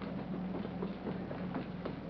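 Footsteps coming down wooden stairs: a series of faint, irregular knocks over the soundtrack's steady low hum.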